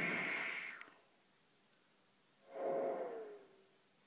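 Serge modular New Timbral Oscillator frequency-modulated by the Dual Random Generator's timing-pulse noise: a band of noise centred on the oscillator's pitch. It sounds twice with a silent gap between. The first burst sits high; the second is lower, with a faint pitch sliding slightly down inside the noise.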